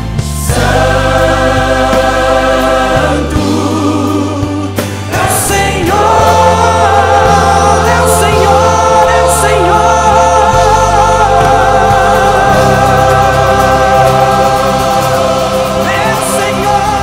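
Live gospel worship music from a large choir and band: the choir and lead singers hold long sustained chords over bass and guitars, growing louder about six seconds in.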